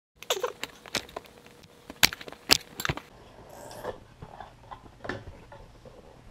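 Hands opening a cardboard box: a run of sharp knocks and scrapes of cardboard, loudest about two seconds in, then softer rustling and light taps as the lid comes off and the foam insert is handled.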